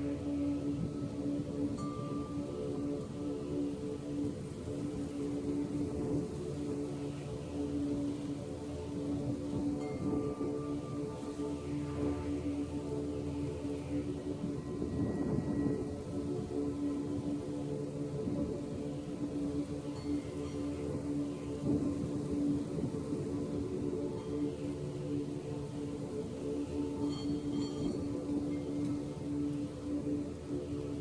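Steady meditative drone of several sustained, overlapping tones, the sound-healing music of a sound meditation session.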